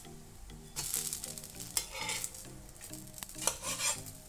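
Metal spatula scraping across a cast-iron dosa pan in three or four short strokes as a crisp jowar dosa is worked loose and lifted off.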